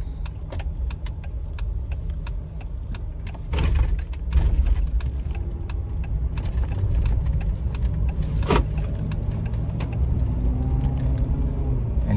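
Car engine and road noise inside the cabin while driving: a steady low rumble that swells about four seconds in, with scattered clicks and knocks from the cabin.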